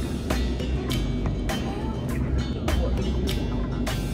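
Background music: a beat with deep bass and sharp percussion hits recurring about every half second.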